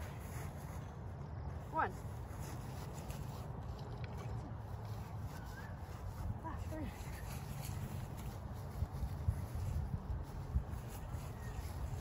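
Outdoor background noise: a steady low rumble, with a few small soft knocks in the second half.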